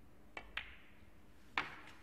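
Snooker shot: the cue tip tapping the cue ball, then a moment later the click of the cue ball striking an object ball. About a second later comes a louder knock of ball on ball or cushion, with a short ring and a faint click after it.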